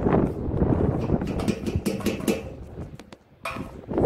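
Close handling noise at the fuel tank neck: rubbing and rumbling with many small clicks and knocks as the fuel strainer screen is worked into place, easing off near the end.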